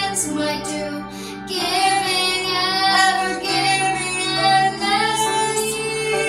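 A young girl singing a slow Christian song in long held notes, phrase after phrase with short breaks between.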